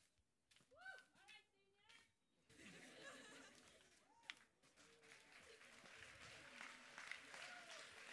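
A brief faint voice, then a crowd starts clapping and chattering about two and a half seconds in, the applause swelling slowly.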